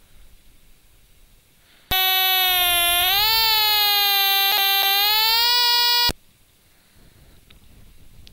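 A Stylophone recording played back on the computer: one held, buzzy electronic note that starts about two seconds in and lasts about four seconds. Its pitch rises a little partway through, and then it cuts off suddenly.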